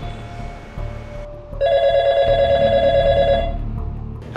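Mobile phone ringtone: an electronic warbling ring that comes in loud about one and a half seconds in and stops shortly before the end.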